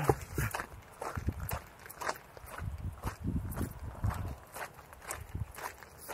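Footsteps of a hiker in sandals on a dirt and gravel trail: uneven soft thumps and light crunches, a few a second.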